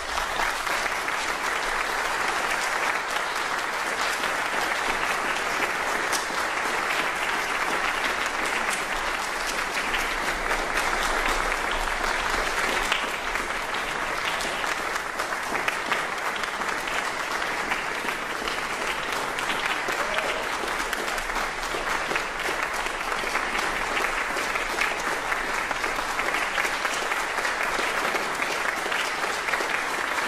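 Audience applause, steady and dense clapping.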